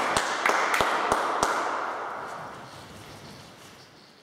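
Applause in a hall dying away over about three seconds. Through the first second and a half there are sharp, evenly spaced claps, about three a second.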